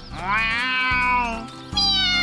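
Two long meows over background music: the first rises and is drawn out for about a second and a half, and the second falls in pitch near the end.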